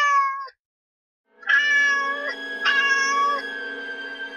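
A kitten meowing, as a cartoon sound effect: one short meow right at the start, then two longer meows about a second and a half in and just under three seconds in. A steady tone lingers after the last meow.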